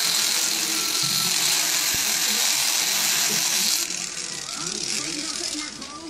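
Electric foot callus remover with its abrasive roller spinning against an Eclectus parrot's beak, a steady grinding hiss that stops about two-thirds of the way through.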